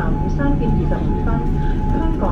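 Cabin noise of a Boeing 787-9 taxiing: a steady low rumble with a thin steady tone over it, and passengers talking in the background.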